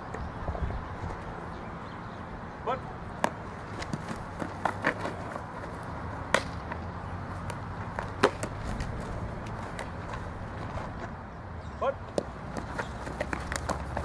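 A softball smacking into leather fielding gloves: a few sharp, separate knocks a couple of seconds apart during catching and throwing drills, over a steady low wind rumble.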